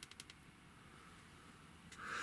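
Near silence: room tone, with a few faint clicks at the very start.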